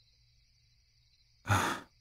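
A man's single short, breathy sigh about one and a half seconds in, after a near-silent pause with only a faint steady hiss.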